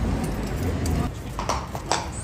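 Shod hooves of a standing cavalry horse striking the stone floor of its sentry box: two sharp clacks about half a second apart near the end.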